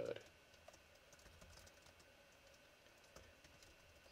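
Faint typing on a computer keyboard: a scattering of soft, irregular keystrokes as a line of code is entered.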